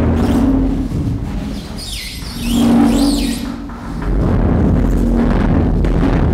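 Live experimental electroacoustic and percussion performance: a continuous deep rumble under a held low hum that fades out and returns, with high squeaking, chirping glides in the middle.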